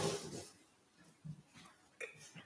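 A man swallowing a drink from a bottle: a loud gulp at the start, then two softer swallows later on.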